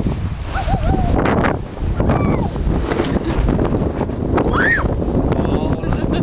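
Wind buffeting the microphone aboard a small sailboat under way, with water splashing along the hull. Voices break through the wind, including a high rising-and-falling cry near the end.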